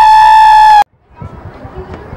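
A woman's loud, long held cheer close to the microphone, a single steady high pitch that cuts off suddenly about a second in. Faint crowd noise and chatter follow.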